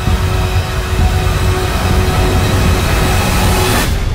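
Trailer score building into a loud, dense swell with a deep rumble underneath. It cuts off suddenly just before the end, leaving a fading tail.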